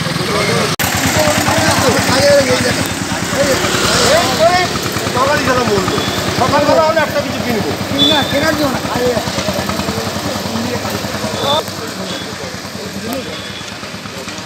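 People talking in the street, several voices, over a motor vehicle engine idling steadily underneath.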